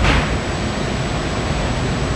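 Steady hiss of old recording noise, with a faint, high-pitched steady whine running through it.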